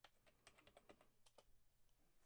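Faint computer keyboard typing: an irregular run of quick, light keystrokes.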